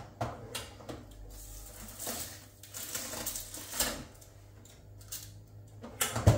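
A foil food tray on a metal baking tray being slid into a countertop oven: a series of light, scattered metallic clatters and knocks.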